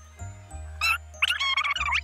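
Background music: steady low bass notes, with high, squeaky, bending sounds laid over them from about a second in.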